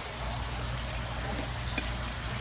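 Restaurant room noise: a steady low hum under an even hiss, with a couple of faint clicks.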